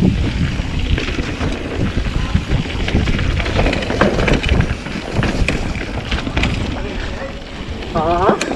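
Mountain bike rolling fast down a dirt singletrack: tyre noise and the bike rattling over rough ground, with many small clicks and knocks and wind buffeting the microphone.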